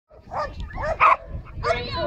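A dog barking a few short times, the loudest bark just after a second in, followed by a person calling out.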